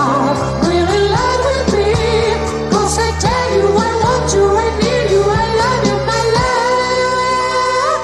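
A 1970s pop song with a male lead vocal singing a gliding melody over a band with bass and drums. The bass and drums drop out about six and a half seconds in, leaving the voice over lighter accompaniment.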